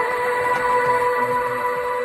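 Logo-reveal music sting: a loud, sustained synthesized tone holding several steady pitches at once, like a horn-like chord.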